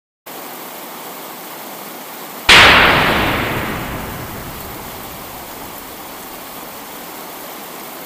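A steady hiss, then a single sudden loud burst of noise about two and a half seconds in that fades away over a couple of seconds.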